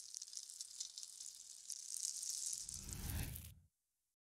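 Faint crackling hiss of a logo-animation sound effect that swells into a low whoosh about two and a half seconds in, then cuts off suddenly shortly before the end.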